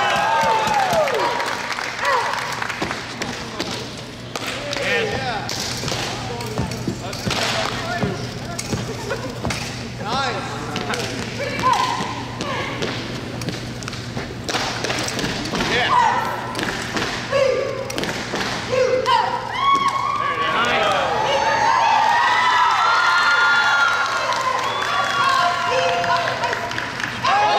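Drill rifle being spun, caught and slapped against the hands in an exhibition routine: a scattered series of sharp smacks and thuds. Shouts and exclamations from onlookers come and go, busiest near the end, over a steady low hum.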